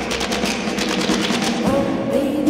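Music for a skating programme playing, with a fast run of percussive strikes, many to the second, over held tones.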